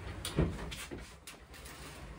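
Sliding wardrobe door being pushed along its track, rumbling, with a knock about half a second in.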